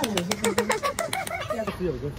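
Quick, even hand clapping, about ten claps a second, dying away about a second in, with a man's voice talking over it.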